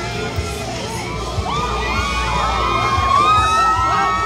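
A street crowd shouting and cheering, many high voices overlapping, growing louder from about halfway through, over music from a sound system.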